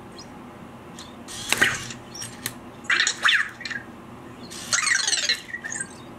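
Anki Vector robot giving three short electronic chirps: one about a second and a half in, then two warbles with gliding pitch at about three and five seconds.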